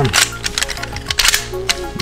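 Plastic parts of a Transformers Hound Turbo Changer action figure clicking several times as its limbs and panels are folded into truck mode, over steady background music.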